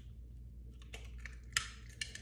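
A few short, faint clicks as a milled Herbst Advance Elite oral sleep apnea appliance is worked off the teeth by hand. The sharpest click comes about one and a half seconds in.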